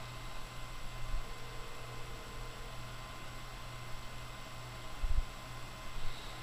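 Steady low electrical hum over a faint even hiss, with a brief low thump about five seconds in.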